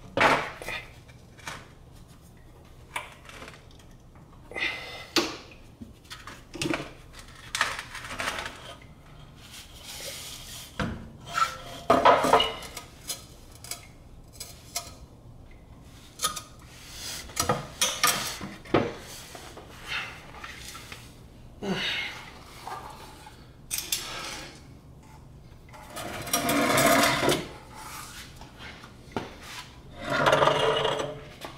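Irregular metal clanks, knocks and rattles from a car's exhaust pipe and muffler being worked loose and handled by hand, with a longer scraping rattle near the end as the section comes down.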